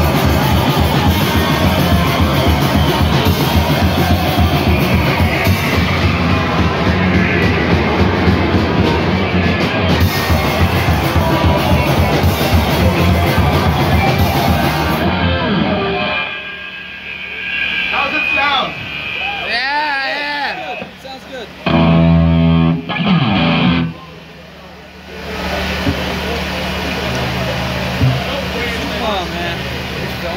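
Live hardcore punk band playing loudly through amps, with drum kit and distorted electric guitars, stopping about halfway through. After it come voices and a loud held amplified note lasting about a second.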